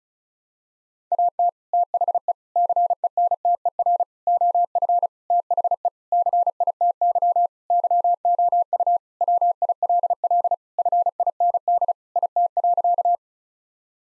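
Morse code at 35 words per minute: a single steady-pitched beep keyed on and off in rapid dots and dashes, starting about a second in and stopping about a second before the end. It sends the sentence "At the center of the city you will find it" a second time.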